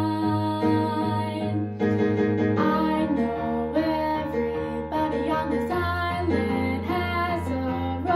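A young girl's solo voice singing a musical-theatre ballad into a microphone over a recorded instrumental backing track.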